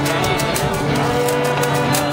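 A traditional fiddle tune played on a violin, with long held notes over a steady low hum, accompanied by a wooden washboard scraped with sticks in a brisk, even rhythm.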